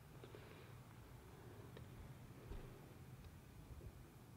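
Near silence: a faint, steady low rumble of outdoor background, with a few faint ticks.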